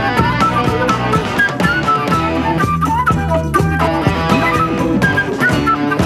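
Instrumental passage of a rock song with guitar and drums, played back from a 45 rpm mono vinyl single on a turntable. A bending lead melody runs over a steady beat.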